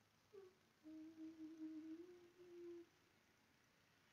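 A woman humming quietly: a brief short note, then one long held hum lasting about two seconds, which stops well before the end.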